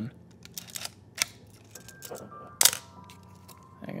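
Canon F-1 35 mm film SLR making its mechanical clicks as it is worked by hand: a few faint ticks, then a sharp click and a louder one about two and a half seconds in. These are the noises the owner calls far more gratifying than a Canon AE-1's, from a camera built like a tank.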